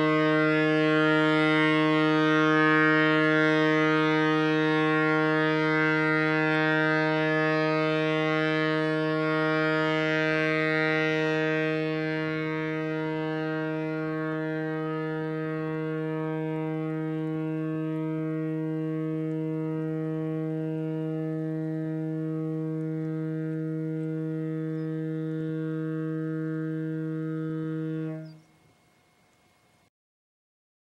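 Wabco E2 two-chime locomotive air horn sounding one long continuous blast as it drains a 20-gallon tank from 120 PSI with no compressor running. About twelve seconds in, as the pressure falls to around 60 PSI, it loses much of its volume and brightness. It sounds on weaker until it cuts off sharply near the end, when the valve is closed at 30 PSI.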